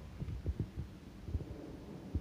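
Soft, low, irregular thumps, about half a dozen across two seconds, with a faint low hum near the end.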